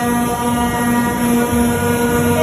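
Digital knife cutting machine running as its cutting head works over sheet material: a steady mechanical drone with a held low tone.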